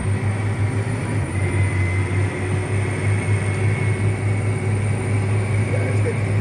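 Steady low engine drone inside the cab of a John Deere tractor pulling a vertical tillage tool across the field, with a thin, steady high-pitched tone from the GPS guidance system.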